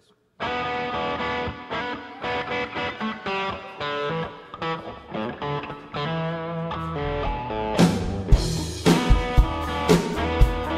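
Custom-built electric guitar played through an overdriven amplifier: a distorted lead line of single sustained notes. About seven seconds in, a low bass part and sharp percussive hits join in.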